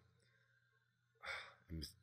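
Near silence, then a little over a second in a man sighs, one short breathy exhale, followed by a brief voiced sound as he starts speaking again.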